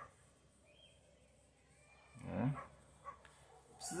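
Mostly quiet, with one short wordless voiced sound about two seconds in that rises and then falls in pitch.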